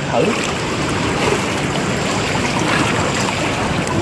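Steady splashing and rushing of pool water as a swimmer in a mermaid tail pushes off and swims close by.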